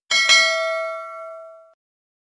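Notification-bell 'ding' sound effect from a subscribe-button animation. A bright bell tone is struck twice in quick succession, then rings out and fades away by about three quarters of the way through.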